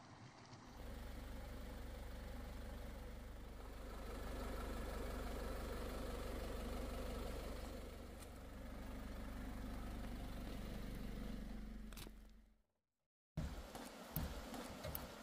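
Pickup truck engine idling steadily with a low hum, which cuts off suddenly near the end; a few sharp clicks follow.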